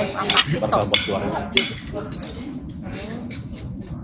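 Spoons and forks clinking and scraping on china plates while eating, with a few sharp clinks in the first two seconds. Voices talk in the background.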